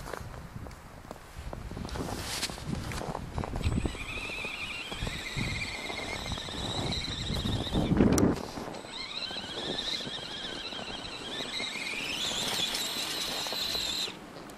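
High whine of an Axial RC rock crawler's electric motor and gears as it drives through snow, the pitch climbing and dropping with the throttle. Low rumbling noise runs under the first half, and there is one loud thump about halfway through.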